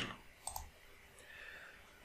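A single faint computer mouse click about half a second in, in an otherwise quiet room.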